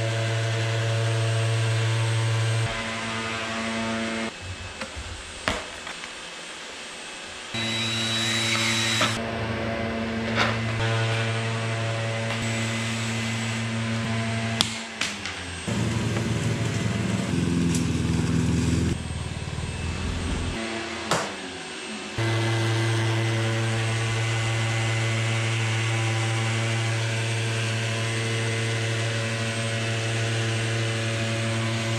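Orbital sander running against a wooden ceiling, with a shop vacuum attached to its dust port, a steady hum. The sound breaks off for a stretch in the middle, where a different, shifting machine sound comes and goes before the steady sanding hum returns for the last several seconds.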